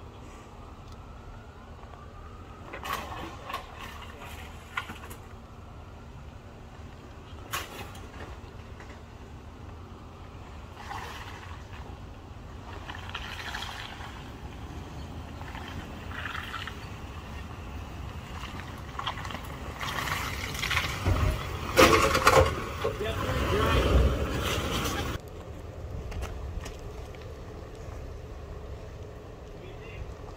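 Lexus GX470 SUV's V8 engine running as it crawls up a steep, deeply rutted dirt grade, heard from outside the vehicle. There is a steady low rumble, with a louder, noisier spell of about five seconds some two-thirds of the way through.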